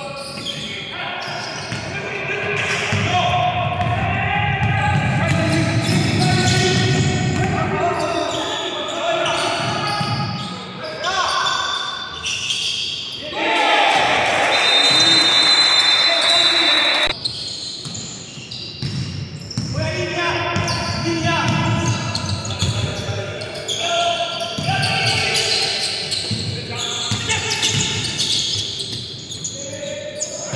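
Indoor basketball game: the ball bouncing on the wooden court and players' voices calling out, echoing in the gym. About halfway through comes a loud noisy stretch of roughly three seconds with a high steady tone in it.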